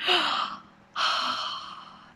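A woman's two breaths with no voice in them: a short one at the start, then a longer one about a second in that fades away.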